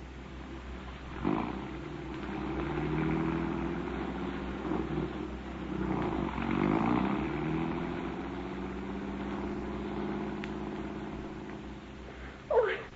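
Radio-drama sound effect of the getaway car: an engine starts a little over a second in and runs with its pitch rising and falling as it revs and pulls away, then dies down near the end.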